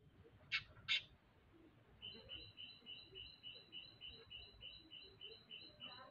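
A bird calling: two sharp chirps about half a second and a second in, then a high two-note call repeated steadily about three times a second.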